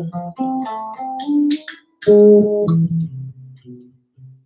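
Solo electric bass playing a short melodic line in C major that brings in an augmented triad, the sharp five. Quick plucked notes run for about two seconds, break off briefly, then a louder group of notes rings and fades out near the end.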